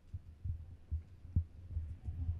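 Handling noise of a wired handheld microphone as it is passed from one person to another: irregular low thumps and rumble, the strongest about one and a half seconds in.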